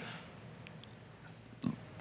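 Faint room tone during a pause in speech, broken about one and a half seconds in by one short breath into a handheld microphone.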